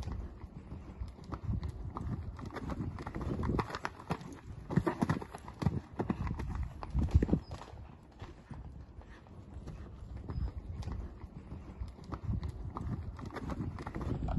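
Hoofbeats of a ridden horse moving over ground poles on sand arena footing, a steady run of dull thuds that is loudest for a few seconds in the middle.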